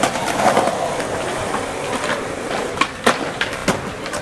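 Skateboard wheels rolling on concrete, with several sharp clacks of boards striking the ground in the second half.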